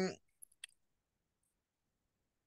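A voice's drawn-out hesitant 'um' trailing off at the very start, then two faint short clicks close together about half a second in.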